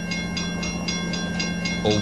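Background music bed: a held chord with a fast, even ticking beat, about five ticks a second.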